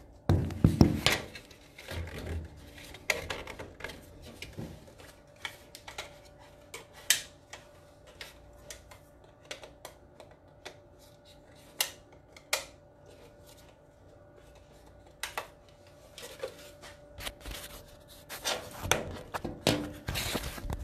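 Handling sounds of a battery being put back onto a battery pack: scattered clicks, taps and rubbing, loudest in the first second and again near the end, over a faint steady tone.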